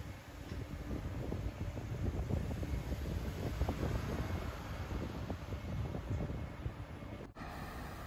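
Outdoor ambience: wind buffeting the microphone in uneven gusts over a low hum of city traffic. It cuts off abruptly about seven seconds in to a quieter, steadier hum.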